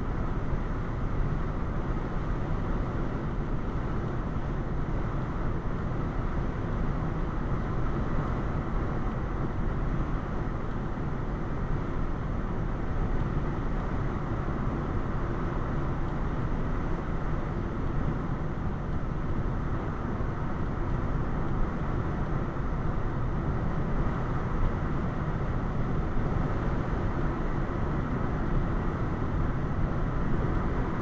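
Steady road and engine noise inside a car cabin cruising at about 60 mph on a highway.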